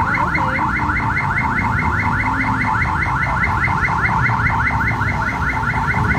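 An electronic alarm sounding a rapid, even train of short rising chirps, about seven a second, over low traffic rumble.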